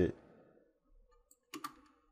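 Two quick clicks at the computer about one and a half seconds in, as playback of the animation is started. A faint steady hum lies under them.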